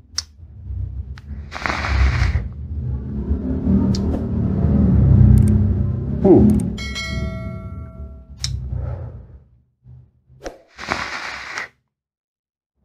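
A long drag on a Dead Rabbit RDA vape: airflow rushes through the atomizer for several seconds, followed by breathy exhales of vapour. A bright chime sound effect rings briefly about seven seconds in.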